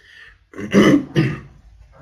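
A man clearing his throat with two short, rough bursts about half a second apart.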